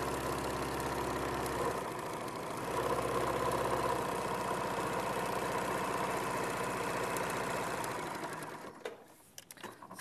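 Electric sewing machine running steadily as it stitches in the ditch through the layers of a patchwork quilted cushion top. It eases off briefly about two seconds in, then runs on and stops near the end.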